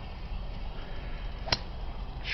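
A golf club striking a teed ball on a tee shot: one sharp crack about a second and a half in, over a steady low rumble.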